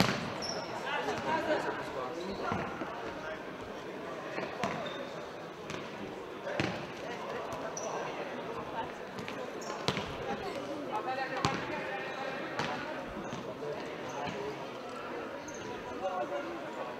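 Futsal ball being kicked and struck on a sports-hall floor, a sharp thud every second or two, over players calling out and spectators talking.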